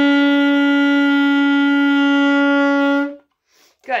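Alto saxophone holding one long, steady note B, fingered with just the first key under the pointer finger. The note cuts off about three seconds in.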